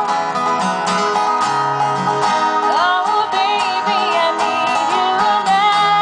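Live country-pop band playing: acoustic guitars strumming under sung vocal lines, with held notes near the end.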